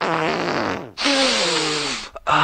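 Two long fart sounds in a row, each falling in pitch, the second starting about a second in after a brief gap.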